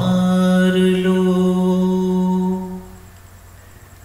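A male voice humming one long, steady note between sung lines, held for nearly three seconds and then fading away.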